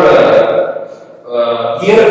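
A man's voice speaking slowly with long drawn-out syllables, in two stretches with a short pause about a second in.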